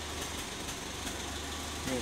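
Steady low hum in the background, unchanging throughout, with a voice starting right at the end.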